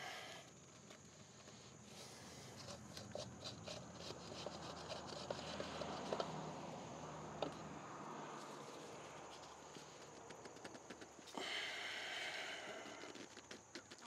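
Faint handling noise as an over-tightened spin-on oil filter is worked loose by hand: gloved hands and a plastic catch funnel rubbing and clicking against the filter, with a brief louder rustle near the end.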